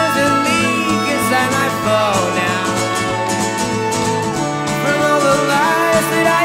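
Folk song played live by a small ensemble: strummed acoustic guitar under long held notes from flute and trumpet.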